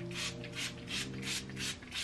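Makeup setting spray misted onto the face in a quick run of short pump sprays, about four hisses a second.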